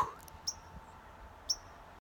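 Two short, high bird chirps about a second apart, over a faint outdoor background.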